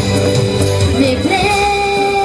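Live pop song: a woman singing over instrumental backing, holding one long note from about a second in.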